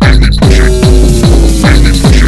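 Electronic dance music played loud: a four-on-the-floor kick drum at about two and a half beats a second. About half a second in, a hissing noise wash and a slowly falling held tone come in over the beat.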